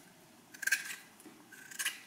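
Vegetable peeler scraping the skin off a butternut squash: two short strokes about a second apart.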